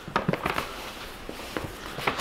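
Paper manila envelope rustling and crinkling as it is handled and opened, with a few sharp crackles in the first half second.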